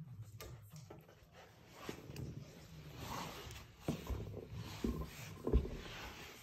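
Saarloos wolfdog puppies scuffling on a wooden puppy bridge: bodies and paws knocking on the boards, with several thumps in the second half and faint puppy noises.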